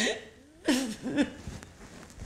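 A woman crying, with two short, catching sobs near the middle.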